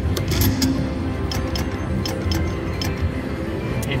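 Video slot machine playing its game music with sharp clicking sounds as a spin plays.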